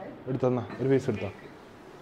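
A voice making two short sounds in the first second or so, then quiet room tone.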